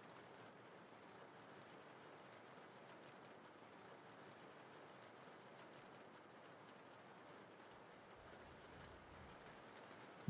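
Faint, steady rain with nothing else standing out.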